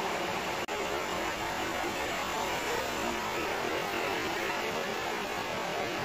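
Steady background hum and hiss, even throughout, with a brief dropout about two-thirds of a second in.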